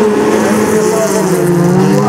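Several folkrace cars running hard on a gravel track, their engines sounding together with a pitch that dips and then climbs again about a second in, over hissing tyre and gravel noise.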